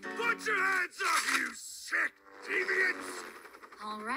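Animated cartoon characters' voices in short exclaimed sounds, with background music underneath.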